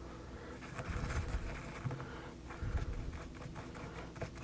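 A toothbrush scrubbing hardened grime out of a T-Maxx differential case, heard as rapid bristle scratching in two bursts, with light knocks as the case is handled.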